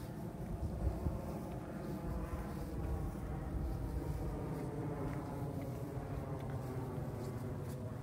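A steady, engine-like drone: a low rumble with a held, slightly wavering hum over it.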